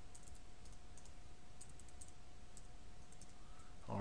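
Faint computer keyboard keystrokes: scattered light clicks of keys being typed, over a low background hiss with a faint steady tone.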